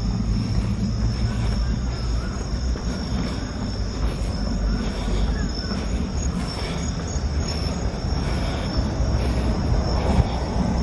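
Crickets chirping in a steady, high, even trill over a low, constant rumble.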